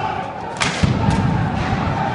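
An explosion: a sharp bang about half a second in, followed by a low rumble.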